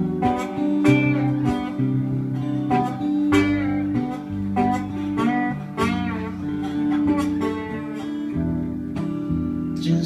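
Acoustic guitar strumming steadily in an instrumental passage, with a guitar played flat on the lap and low sustained notes underneath that change every second or so.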